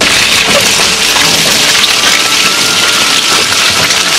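Loud, steady crackling rustle of clothing rubbing against the camera's microphone. It starts and stops abruptly.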